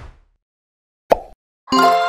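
The tail of a whoosh at the start, a single short pop about a second in, then a bright chord of steady ringing tones starting near the end: an animated logo sting's sound effects.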